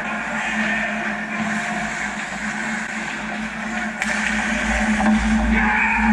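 Ice hockey game on an indoor rink: skates and sticks on the ice over a steady low hum, swelling near the end as a goal is scored.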